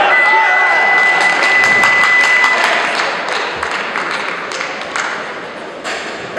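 A steady, high electronic tone held for about two and a half seconds, over clapping and voices from a crowd in a large hall; the clapping thins out after about three seconds.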